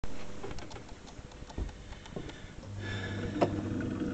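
A few light knocks and taps, then, about two-thirds of the way in, an electric potter's wheel starts up and its motor hums steadily, with one sharp knock soon after.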